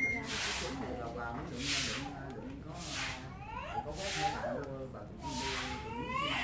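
Short puffs of breath blown into a freshly lit fire of dry split stalks, a hiss about every second and a bit, five in all, with a voice talking underneath.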